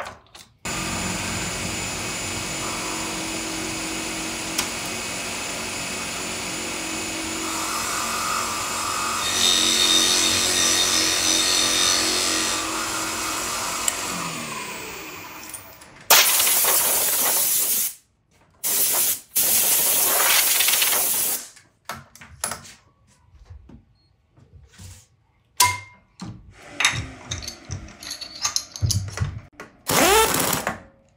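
Milling machine spindle running steadily, a Forstner bit boring into the end of a wooden handle blank, the cut growing louder and brighter for a few seconds before the machine's pitch drops away. Two loud rushing bursts follow, then scattered clicks and knocks of tooling being handled at the spindle.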